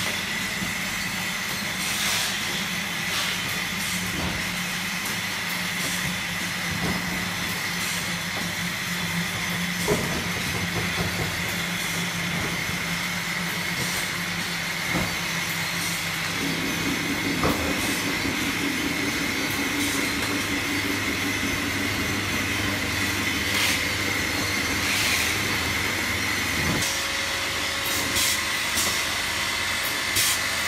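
Automatic liquid filling and capping line running: a steady mechanical hum and hiss with a constant high whine, and occasional short clicks. The low hum shifts about halfway through.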